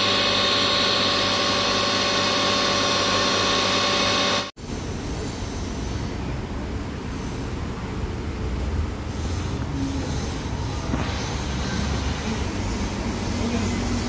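BMW 745Li engine running at a steady speed with a steady whine, which cuts off abruptly about four and a half seconds in; a lower, rougher running sound follows.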